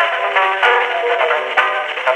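Ragtime banjo solo played back from a 1902 Edison Gold Moulded wax cylinder through the acoustic horn of an Edison Home Phonograph, with quick, evenly picked notes. It sounds thin, with no deep bass or high treble, and there are a couple of faint clicks.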